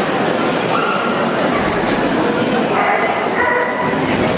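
Agility dog giving high yips and barks as it runs the course, a short call about a second in and a string of them in the last second or so, over steady background chatter in a large hall.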